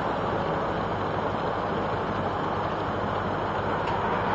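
Triumph Roadster's four-cylinder engine running steadily while the car drives along, heard from a bonnet-mounted camera under steady wind and road noise.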